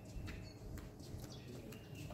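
Quiet room with a few faint short bird chirps and light clicks.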